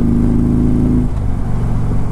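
A 2015 Harley-Davidson FreeWheeler trike's V-twin engine running under way. Its note drops suddenly to a lower pitch about halfway through.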